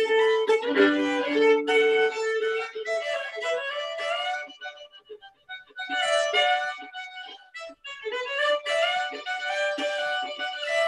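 Solo violin playing a simple fiddle tune, opening with two notes sounded together. The playing softens briefly about halfway and picks up again about six seconds in.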